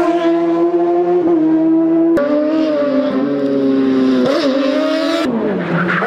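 Racing car engine running hard at high revs, its pitch holding fairly steady with brief dips and a sudden jump about two seconds in, then falling away near the end.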